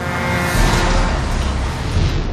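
Car crash sound effect: a sudden loud crash with a deep rumble under it, slowly dying away.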